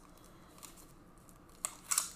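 Plastic card packaging or sleeves being handled at a table: low rustling, then two short sharp crinkles near the end, the second the louder.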